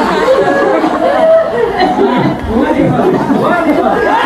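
Several men's voices talking over one another in lively group chatter.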